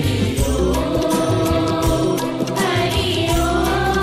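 Devotional mantra chanting set to music: a voice holds long sung notes over instrumental accompaniment with a steady low bass.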